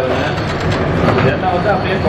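People talking over the steady low drone of a motor-driven wooden oil press (chekku) running at the mill.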